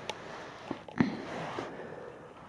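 Handling noise from hands turning a plastic model locomotive close to the microphone: a faint rustle with a small click about a second in.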